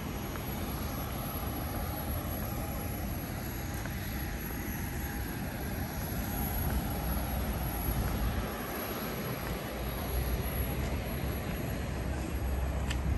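Steady low rumble and hiss of airport ambience from an observation deck, with distant jet aircraft engines running on the apron and a faint steady whine in the first few seconds.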